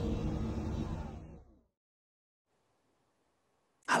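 The fading tail of a whoosh-and-hit sound effect that closes an intro logo sting, dying away over about a second and a half into dead silence. A man's voice starts right at the end.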